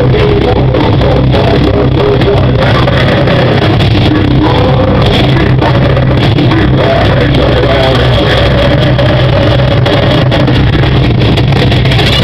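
Live metal band playing loud: distorted electric guitars, bass and drums, with the singer's vocals over them. The level stays loud and nearly constant, as a small digital camera records it.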